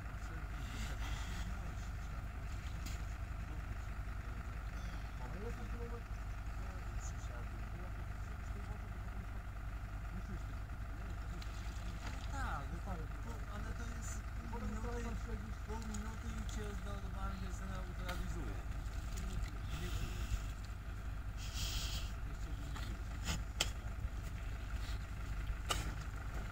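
Wind rumbling steadily on the microphone, with faint distant voices now and then.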